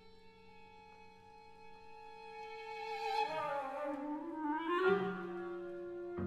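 Contemporary chamber music for winds and bowed strings: soft held notes that swell, with pitches sliding down and back up past the middle before the music settles on a steady low held note.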